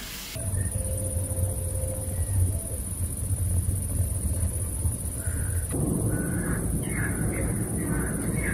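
Dusk outdoor ambience: a steady high-pitched insect chorus over a low rumble, joined about six seconds in by a string of short, repeated calls from animals, likely birds.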